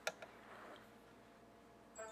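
A short sharp click as a hand touches the smartphone, a smaller click just after, then near silence with faint room tone.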